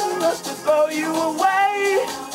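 A man singing karaoke into a microphone over a backing track with a steady beat, holding and bending long sung notes.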